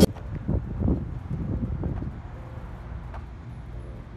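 Wind rumbling on a handheld microphone outdoors, with a few soft low thumps in the first two seconds.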